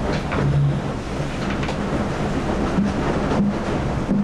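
Strong wind buffeting a microphone at the top of a racing yacht's mast: a steady rushing noise with deep rumbling, over the sea below.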